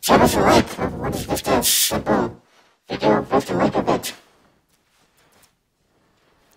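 A voice speaking loudly in two stretches: about two seconds, a short pause, then about another second and a half.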